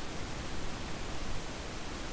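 Steady background hiss with no distinct sounds.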